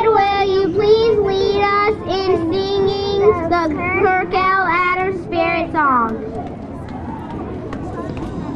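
A child singing a slow melody in long, held notes; the last note slides down about six seconds in. After that, a low murmur of children outdoors.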